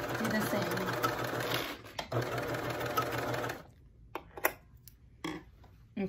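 Baby Lock cover stitch machine running steadily as it sews a reverse cover stitch seam on stretch fabric, stopping about three and a half seconds in. A few soft clicks follow as the fabric is handled.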